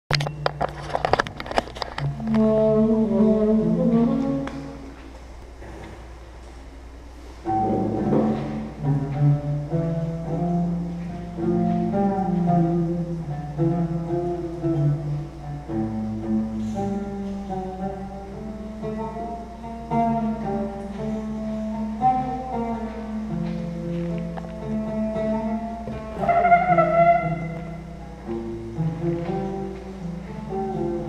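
A small Arabic ensemble playing live: plucked strings led by a qanun, with a bass guitar and hand percussion. A loud opening phrase gives way to a softer passage, and the full group comes in together about seven seconds in.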